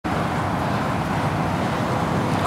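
Steady motor-vehicle noise: an even rumble with hiss, unchanging throughout.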